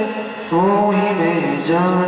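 A man chanting a devotional melody into a microphone, with long held notes and slow glides in pitch; a new phrase starts about half a second in.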